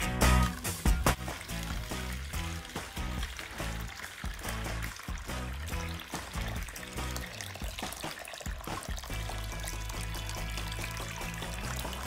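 Background music, with warm water poured in a steady stream from a kettle into a bowl lined with a plastic bag partway through.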